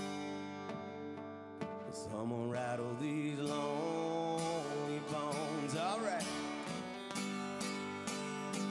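Two acoustic guitars playing an instrumental break in a country song, strummed chords at the start and end, with a lead melody of held and bent notes through the middle.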